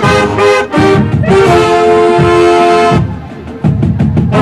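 Marching band brass and saxophones playing loud, short punched chords, then one held chord. Near the end the horns drop out for a moment, leaving only drum hits.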